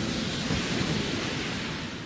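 Rumble of a huge cartoon explosion, a dense roar that slowly dies away.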